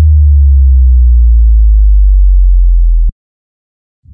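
Loud, deep electronic tone sliding steadily down in pitch, a synthesized bass-drop effect, cutting off suddenly about three seconds in.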